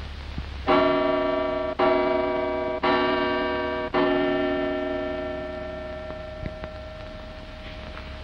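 Mantel clock striking four times, about a second apart, each stroke a bell-like tone that rings on; after the fourth stroke the tone fades away slowly over several seconds.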